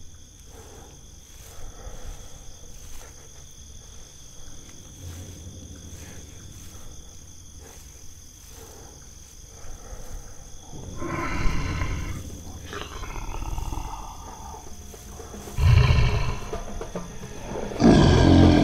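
A lion roaring, once about eleven seconds in and again about sixteen seconds in. Underneath is faint jungle ambience with steady high insect tones.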